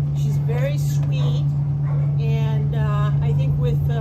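A loud, steady low mechanical hum, with short rising-and-falling vocal sounds over it, strongest about two to three seconds in.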